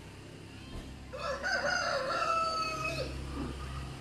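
A rooster crowing once, a single drawn-out cock-a-doodle-doo beginning about a second in and lasting about two seconds.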